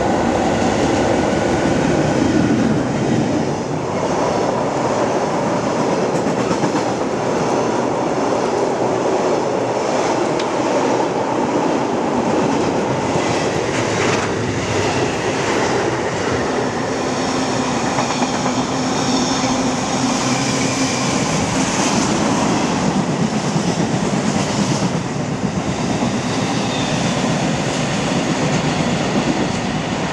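Freight train of tank wagons passing at speed close by: a continuous loud rumble with wheels clicking over rail joints. Some high-pitched ringing tones come and go past the middle.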